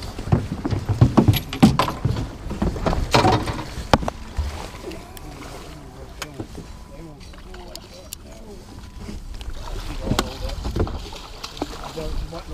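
A hooked musky thrashing and splashing at the side of the boat as it is scooped into a large landing net, with a run of knocks and thumps in the first few seconds.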